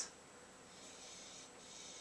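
Faint, drawn-out sniffing through the nose at a glass of white wine, breathing in its aroma, setting in after about half a second.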